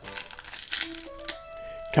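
A foil booster-pack wrapper (Yu-Gi-Oh Turbo Pack) crinkling in the hands as it is handled and pulled open, the crackle strongest in the first second or so. Quiet background music with a few held notes plays under it.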